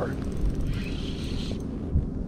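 Wind buffeting the microphone as a steady low rumble, with a brief faint hiss about a second in and a short thump at the end.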